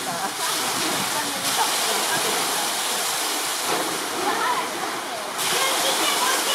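Steady rush of running water, with people's voices faint in the background.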